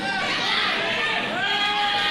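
People's voices shouting and calling in a hall, with one long drawn-out call near the end.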